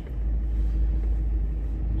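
Ford Crown Victoria's 4.6-litre V8 running, heard from inside the cabin as a steady low rumble with a faint steady hum above it.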